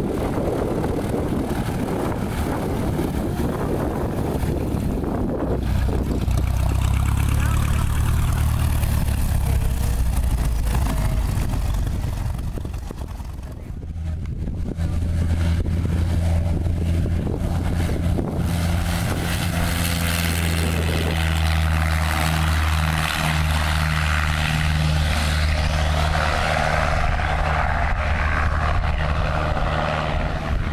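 Single-engine light aircraft's piston engine and propeller running, a steady low drone that comes up to full power for the takeoff run on a grass strip. Wind buffets the microphone in the first few seconds, and the engine sound dips briefly about halfway through before returning steady.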